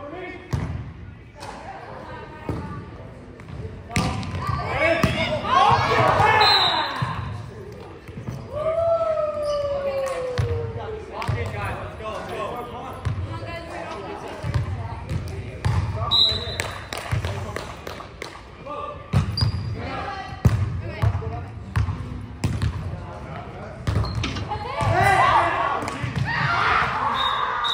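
Volleyball rally in a gym: the ball thumping off players' arms and hands, with scattered shouts and calls from the players, all echoing in the large hall. One drawn-out falling call comes about ten seconds in.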